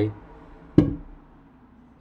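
A single short knock about a second in, from the wooden wine box being handled.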